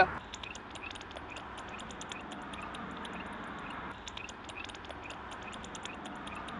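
Bat detector turning the echolocation calls of emerging Mexican free-tailed bats into rapid, irregular clicks, several a second, over a steady hiss.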